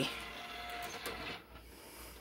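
DVD player's disc drive whirring as the disc spins up and loads, with a couple of faint clicks, dying away about a second and a half in.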